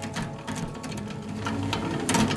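Small plastic shredder running, a steady motor hum under rapid, irregular clicks and crunches as its blades chew up plastic pieces.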